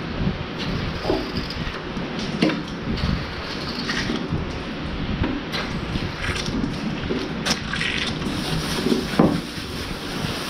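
Water spraying from a hose nozzle onto a Lely robotic milker's teat cups and arm as they are washed down, with scattered knocks as the cups are handled.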